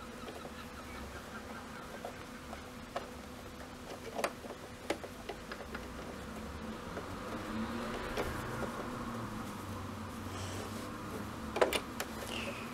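Domestic sewing machine buzzing faintly and slowly as fabric is fed under a wide hem foot, with a few light clicks.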